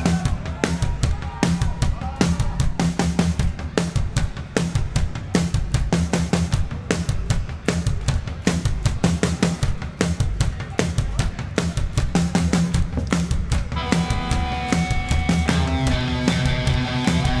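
Live rock drum kit playing a steady bass-drum-and-snare beat as a song intro. Electric guitars and bass come in about two seconds before the end.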